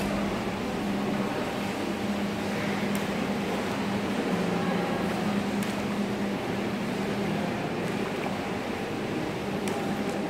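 Steady hum of ventilation machinery in an indoor pool hall: an even air noise under a low drone, with a few faint clicks.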